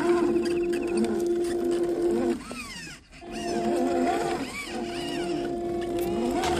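Electric drive motor and gearbox of an MN999 1/10-scale RC Land Rover Defender whining at a steady pitch under throttle. About two and a half seconds in, it cuts out with a falling whine, then picks back up under throttle less than a second later.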